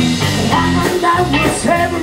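A blues band playing live and loud: electric guitar, electric bass and drum kit, with a lead voice coming in during the second half.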